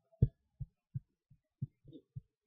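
Soft, low-pitched thuds of computer mouse clicks, about six in two seconds at uneven spacing, the first the loudest.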